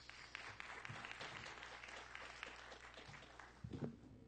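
Audience applauding, a faint patter of many hands that thins out over the last second or so. A short burst of voice comes near the end.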